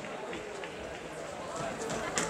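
Indistinct voices of spectators around a kickboxing ring, with a faint knock near the end.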